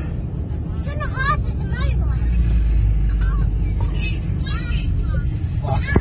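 Low, steady rumble of a car driving, heard from inside the cabin, growing a little louder about two seconds in. Short bursts of excited voices break in over it several times.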